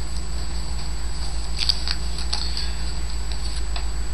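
Foil trading-card pack wrapper crinkling and cards rustling as they are pulled out of the pack and handled, with a cluster of sharper rustles about two seconds in. Underneath runs a steady low electrical hum and a faint high whine.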